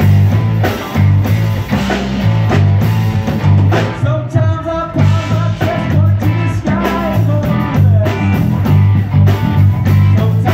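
Live rock band playing: electric guitar, electric bass and drum kit over a pulsing bass line, with a voice singing from about four seconds in.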